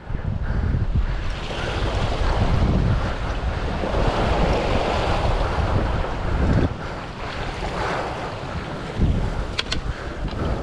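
Wind buffeting the microphone in uneven gusts over small waves washing against a boulder rock wall.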